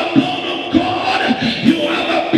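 A man's voice shouting through a microphone and PA in a string of drawn-out calls, over background music.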